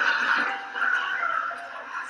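A theatre audience laughing, loudest at the start and easing off over the two seconds.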